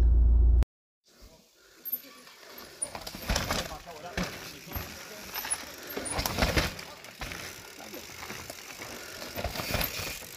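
A steady low hum that cuts off abruptly, then a mountain bike riding down a steep dirt and loose-stone trail: tyres crunching and skidding on the ground, with irregular knocks and rattles from the bike.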